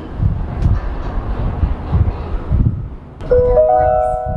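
Low rumbling of the moving Disney Skyliner gondola cabin. A little over three seconds in, a rising three-note chime from the cabin's onboard speaker rings out and holds, the cue for a recorded announcement.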